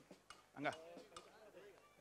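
A quiet stretch with one short spoken word and a few faint scattered clicks; the band is not playing.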